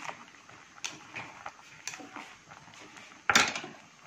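A pot of beef offal stew boiling, with scattered small pops and clicks. A brief, louder clatter comes about three seconds in.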